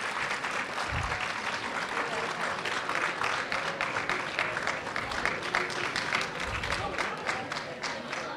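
An audience applauding steadily, a dense patter of many hands clapping, with voices from the crowd mixed in.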